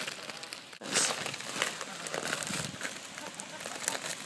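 Clear plastic bag of grain crinkling and rustling as it is handled and its closing string is pulled, with a louder rustle about a second in.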